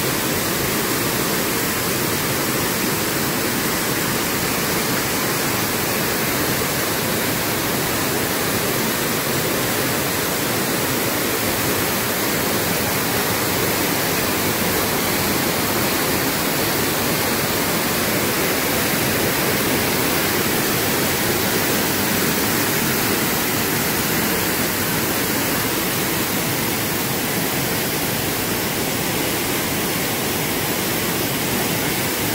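Mountain stream rushing over boulders in small cascades: a steady, even roar of white water.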